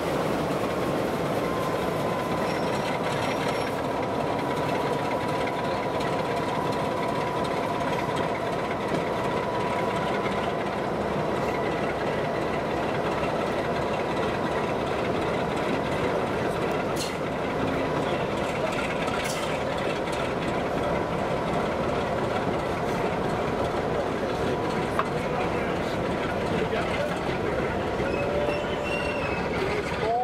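Diesel locomotive passing close beneath, hauling a train of coaches away, its engine running under load with a steady rumble of wheels and running gear. A thin steady whine sounds through the first half.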